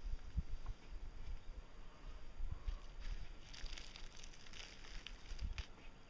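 Thin plastic backing film peeled off a self-adhesive flexible solar panel: a faint crinkling rustle that grows stronger in the second half, over a low rumble of wind on the microphone.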